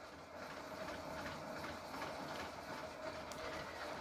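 Faint steady background noise with a low hum and a thin steady tone.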